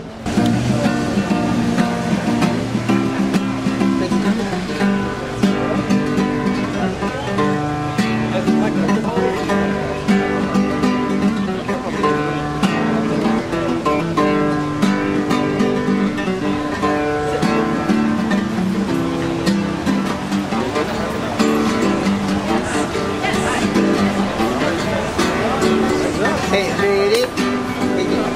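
Acoustic guitar played solo in a continuous run of quickly changing notes and chords.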